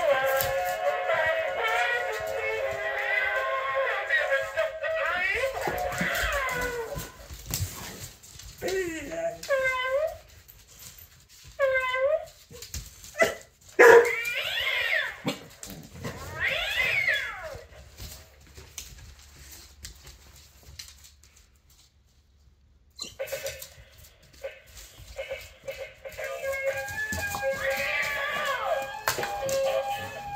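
Battery-operated walking toy cat playing a tinny electronic tune, then giving a series of meows that rise and fall, about a third of the way in. After a short quiet stretch the tune starts again.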